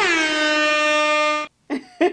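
Air horn sound effect: a fast run of short pulsing blasts that runs into one long steady blast, cut off suddenly about one and a half seconds in.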